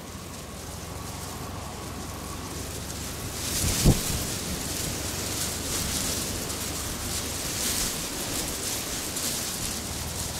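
Wind rushing over the microphone, with a single thump about four seconds in.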